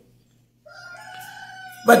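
A faint, drawn-out call held on one steady pitch for about two seconds, starting about half a second in and dipping slightly at its end, with the man's voice cutting in near the end.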